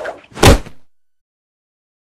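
A single loud slam about half a second in, dying away within half a second.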